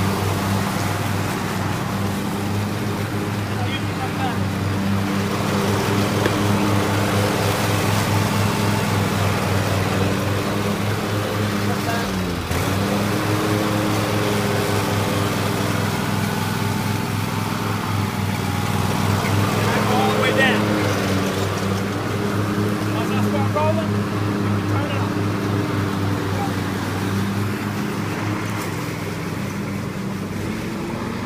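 Husqvarna riding lawn tractor's engine running steadily with the mower blades engaged, cutting grass. It grows a little fainter near the end as the tractor moves away.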